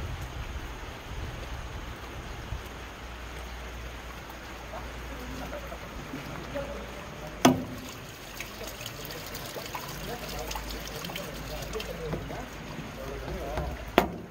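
Rainwater trickling and dripping through a downpipe rainwater filter, with faint voices in the background. A single sharp knock comes about halfway through, and light dripping ticks follow it.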